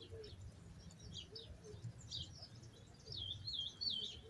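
Faint birdsong: scattered short high chirps, then a wavering, warbling call in the last second.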